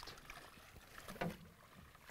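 Faint open-air sound on a small boat on a lake: light wind and water lapping at the hull, with a few faint clicks and knocks around the middle.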